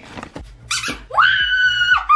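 A woman's high-pitched squeal of excitement that starts about a second in, sweeps up in pitch and then holds steady: a shriek of delight at the dog clearing the jump.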